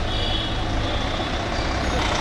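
Large bus engine running close by as the coach pulls away: a steady low rumble with a faint high whine above it.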